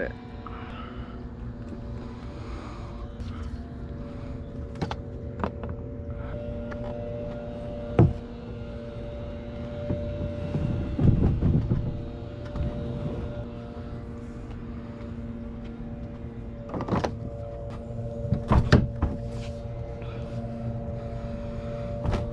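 Plastic Field & Stream kayak being handled and launched, its hull knocking and scraping against a wooden bulkhead and fence: a sharp knock about 8 seconds in, a cluster of thuds around 11 seconds and more knocks near 17 and 19 seconds, over a steady low hum.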